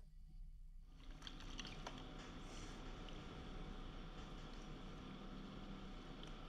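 Faint water swishing and lapping as a plastic gold pan is dipped and swirled in a tub of water, starting about a second in. The panning is at the careful final stage, working the sample down to the heavier concentrates.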